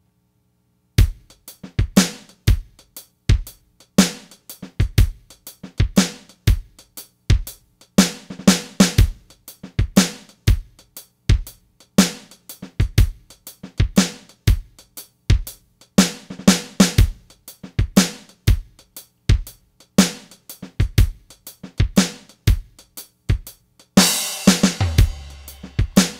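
Drum kit playing a shuffle groove at 120 beats per minute: MIDI drum clips played through Mixbus's General MIDI Synth. The loop starts about a second in with kick, snare, hi-hat and cymbals, and follow options switch it between the groove and drum fills. Near the end a cymbal crash rings on.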